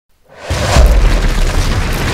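Logo-intro sound effect of a wall being smashed: a sudden boom with a low rumble and crumbling debris, coming in about half a second in and loudest just under a second in.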